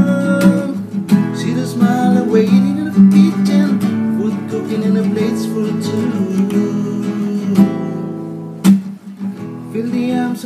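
Nylon-string classical guitar strummed in chords through an instrumental passage, with a brief lull just before the end.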